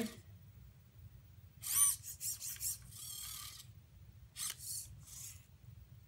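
The servo motors of a ROBOTIS-MINI humanoid robot whine in several short, high-pitched bursts as it moves its arm to wave.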